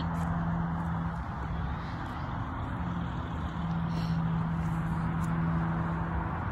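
Steady outdoor background hum: a low held drone over an even rumble, with no clear single event.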